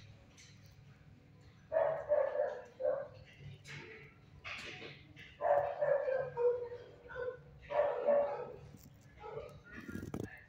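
Dogs barking in a shelter kennel, in short bursts every second or two.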